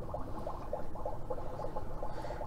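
Low, steady room noise with no distinct event standing out.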